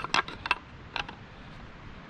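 Sharp metal-and-wood clicks of a brand-new CZ 1012 12-gauge shotgun being assembled by hand: four quick clicks in the first second as the stiff, tight-fitting forend and barrel parts are worked together, then only faint handling.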